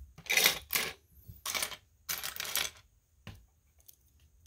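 Loose plastic LEGO bricks clattering against each other and the wooden table as a hand rummages through the pile, in four quick bursts, followed a moment later by a single click.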